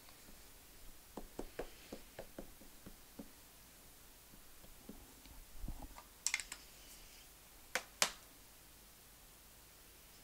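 A small plastic ink pad dabbed again and again by hand onto a rubber stamp, a run of soft quick taps in the first few seconds. After that come a few sharper plastic clicks, two of them close together near the end, as the ink pad cases are handled and set down on a hard stone countertop.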